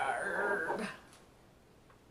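A drawn-out, whining vocal sound lasting about a second, gliding in pitch, then stopping.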